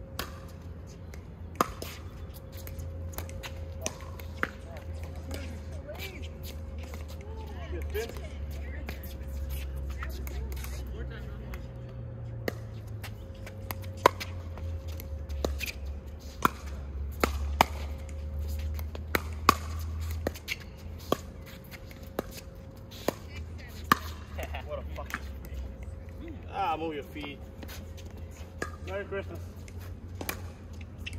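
Pickleball paddles striking a plastic ball in a doubles rally: sharp pops, mostly one to three seconds apart, over a low steady rumble. Voices come in near the end.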